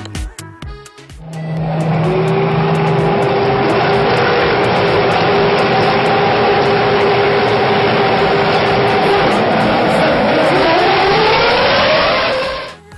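Formula One cars running flat out past the camera on a circuit straight: a loud, steady engine noise with a held engine note, whose pitch rises sharply over the last two seconds as a car accelerates. Music with a beat plays for the first second or so before the cars cut in.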